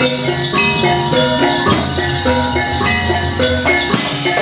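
Javanese gamelan music accompanying a Warok folk dance: metallophones play a melody in even, stepped notes over drumming.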